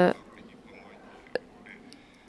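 A pause in speech: a drawn-out 'uh' ends right at the start, then quiet room tone with a single small click about a second and a half in.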